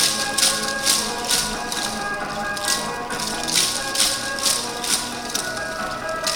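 Yosakoi dance music playing loudly over loudspeakers, with the dancers' wooden naruko clappers clattering together in repeated sharp crashes, several of them about half a second apart.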